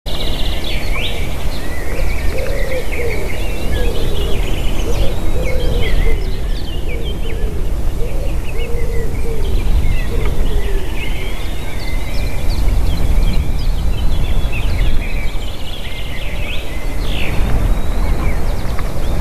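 Low rumble of wind on the microphone, with a chorus of small songbirds chirping and trilling throughout and a run of lower, wavy calls in the first few seconds.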